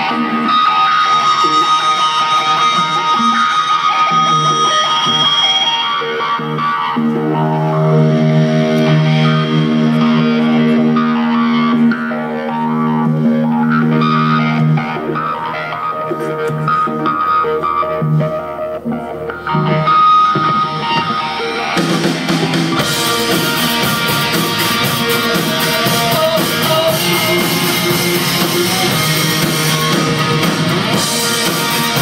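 Live rock band playing through a PA: a distorted electric guitar intro with effects, then drums and the full band come in about two-thirds of the way through, fuller and denser.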